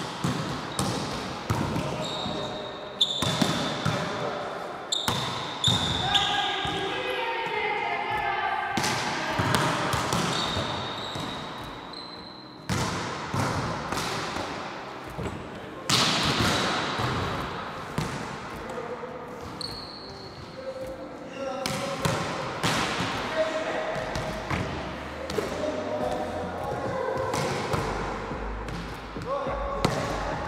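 Volleyballs being struck by forearms and hands and bouncing on a wooden gym floor during passing drills: sharp irregular smacks that echo around a large hall, the loudest about halfway through.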